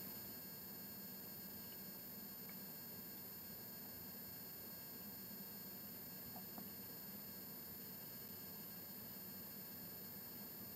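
Low, steady background hiss with several thin, constant high-pitched electronic tones: the recording's room tone and microphone noise floor, close to silence, with one or two very faint ticks.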